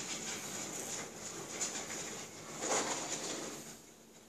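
Supermarket background noise: a steady high-pitched hum under irregular rustling and handling sounds, loudest nearly three seconds in.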